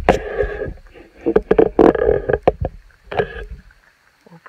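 Handling noise on a handheld camera's microphone: rustling and several sharp knocks over a low rumble, as the camera is swung around. The rumble stops near the end.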